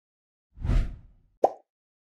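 End-card sound effects: a short swishing swell with a low thump about half a second in, then a single short pop about a second and a half in.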